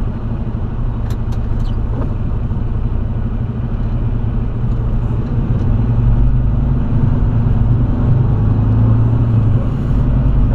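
Semi-truck diesel engine and cab rumble heard from inside the cab while the truck drives slowly and turns. The sound is steady and picks up a little past the middle. A few faint clicks come about a second in.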